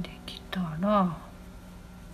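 A person's brief wordless vocal sound, a hummed murmur, about half a second in, lasting around half a second, its pitch rising and then falling.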